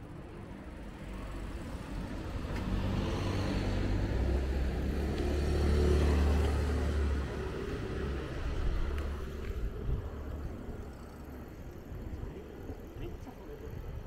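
A car passes close by, its engine and tyre noise swelling to a peak about six seconds in and fading away by about ten seconds.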